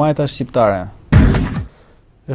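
A man talking for about a second, then a sudden loud thump-like burst of noise lasting about half a second, the loudest sound here.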